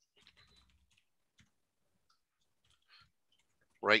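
A few faint, scattered clicks from a computer being worked, with quiet between them; a man's voice starts near the end.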